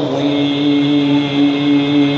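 A man's voice holding one long, steady note in Quranic recitation (tilawat), drawn out on a single pitch at the close of the recitation.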